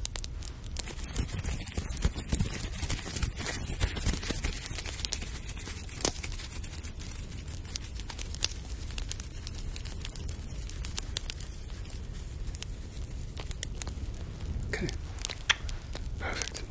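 Close-up rubbing and crinkling noises made beside the microphone, with scattered sharp crackles throughout, used as a hearing-test sound in an ASMR exam.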